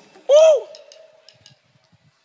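A single short vocal whoop through the stage sound system, its pitch rising and then falling, with a faint held tone fading after it.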